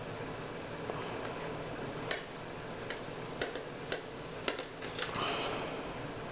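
Needle and thread being worked through the holes of a hand-sewn book: several small, sharp clicks through the middle and a short rustle of paper near the end, over a low steady hiss.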